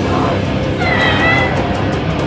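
Hardcore punk band playing live with distorted electric guitars, bass and drums at full volume. About a second in, a high, slightly wavering held tone rises above the band for about half a second.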